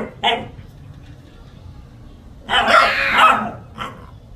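Dog barking: one short bark just after the start, then a longer run of barks about two and a half seconds in, and one more short bark near the end.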